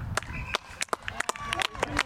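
Faint, distant voices calling on an open rugby pitch, broken by a scatter of short sharp clicks.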